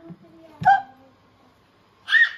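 A small child's single short, sharp vocal sound, like a hiccup, about two-thirds of a second in.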